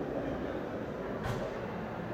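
Steady background noise of a busy exhibition hall: an even, low rumble with no distinct events, and one brief faint hiss about a second and a quarter in.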